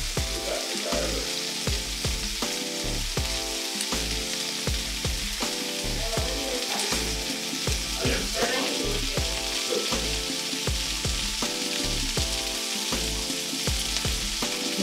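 Fish frying in a pan on a gas burner, a steady sizzle that is being left to cook slowly. Background music with a steady bass beat plays underneath.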